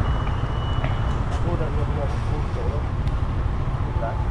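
A steady low rumble with a short, thin high-pitched beep during the first second, and faint voices in the background.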